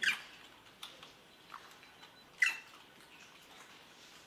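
Young macaque giving short, high-pitched squeaks that fall in pitch: a loud one at the start, another about two and a half seconds in, and a few fainter ones between.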